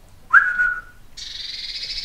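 A person's short whistle that rises and then holds one note for about half a second. About a second in it is followed by a rapid, buzzy churring rattle, typical of a blue tit's scolding call.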